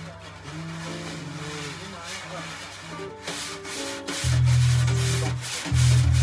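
A small jazz combo playing: a bass line with notes from other instruments, over a drum kit played with sticks. The cymbal and drum strokes grow louder and denser about three seconds in, and the bass is loudest near the end.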